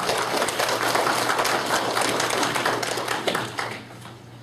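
A roomful of people applauding, the clapping fading away near the end.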